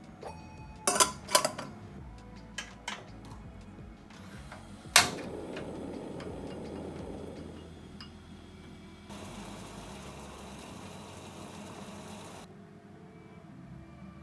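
A stainless gooseneck kettle clanking as it is handled, then a sharp click about five seconds in and the rush of a gas burner lighting beneath it. A steady hiss of the burner flame follows and cuts off suddenly near the end.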